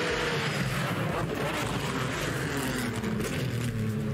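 Formula 3 cars' naturally aspirated 3.4-litre V6 engines running at racing speed, two cars close together. Their engine note sinks steadily over the last few seconds as they slow into a corner.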